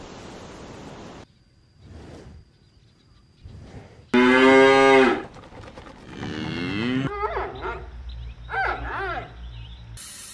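Cows mooing: a loud, level moo about four seconds in, a second moo falling in pitch a couple of seconds later, then shorter calls over a low rumble near the end. A short hiss comes first.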